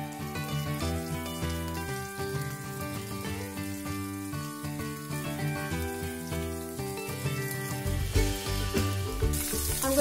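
Semolina-coated pomfret pieces sizzling as they fry in hot oil in a pan, under background music. The sizzle grows louder near the end.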